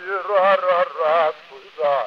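A man's solo voice singing a Hasidic melody, held notes wavering with vibrato in short phrases, with the thin, narrow sound of a 1912 Edison wax-cylinder recording.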